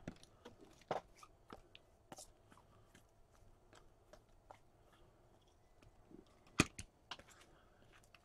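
Hands handling trading-card packs and cards: scattered faint crinkles and clicks of foil pack wrappers and card stock, with one sharper click about two-thirds of the way through.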